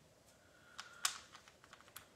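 A few faint, light clicks and taps, the loudest about a second in: small wooden pieces being handled and set down on a table.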